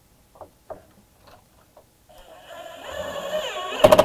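Cordless drill driving a #8 × ½-inch square-drive screw into the screen door's channel. A few light clicks of handling come first, then the motor whine rises over a couple of seconds as the screw goes in, ending in a loud run of rapid clicking as it seats.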